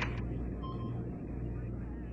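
Low, steady machinery hum of a warship's control room, with a faint short electronic beep about two-thirds of a second in.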